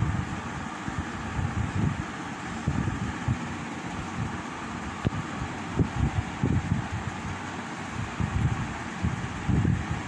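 Steady background hiss, like a fan or air conditioner, with irregular low rumbles on the microphone.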